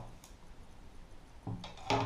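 Mostly quiet room, broken by a short handling noise about a second and a half in and a sharp click near the end as a fishing rod and reel are set down.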